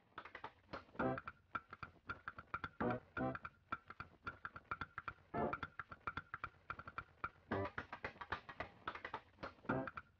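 Quiet background music played on plucked strings: quick picked notes over deeper bass notes about every two seconds.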